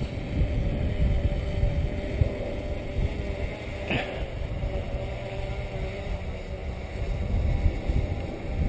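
Faint, steady hum of a DJI Phantom quadcopter's propellers hovering high overhead, under low wind rumble on the microphone. A brief sweep of noise about four seconds in.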